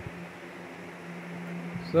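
Steady low machine hum with a faint hiss: workshop room tone.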